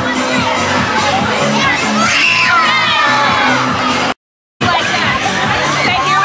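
Many children shouting and cheering over background music with a steady repeating bass line. The sound cuts out completely for about half a second about four seconds in.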